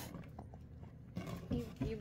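A short, low, growly vocal sound from a toddler right at the microphone, starting about a second in after a quiet moment.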